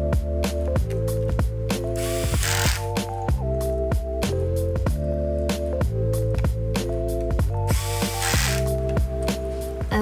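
Cordless electric screwdriver whirring in two short runs, about two seconds in and again about eight seconds in, as it drives the battery screws into a Chromebook. Background music with a steady beat plays throughout.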